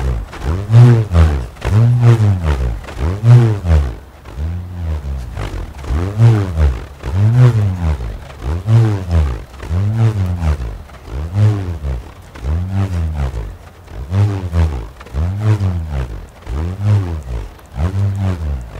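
Bullroarer (Basque burruna), a flat slat whirled overhead on a cord, humming in a pulsing roar. Each pulse swells and rises then falls in pitch, repeating about every three-quarters of a second as the slat spins first one way and then the other on the cord.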